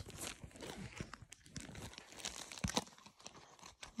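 Clear plastic bags crinkling and rustling as they are handled, in irregular faint crackles and clicks.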